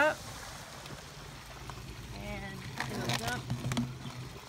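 RV black-water tank draining: waste water rushing through the sewer hose just after the gate valve is pulled open, a steady even rush, with a few clicks past the middle.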